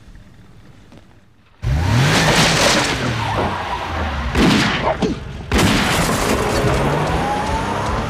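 A car engine starts up loudly about a second and a half in and revs, with tyres skidding and dramatic film music over it. Two sudden loud hits come in the middle.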